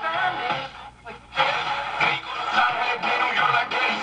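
Music from an AM broadcast station playing through a tube AM radio's speaker, briefly dropping away about a second in.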